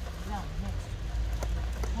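A woman's voice saying "ne, ne" briefly, over a steady low rumble with a few faint ticks.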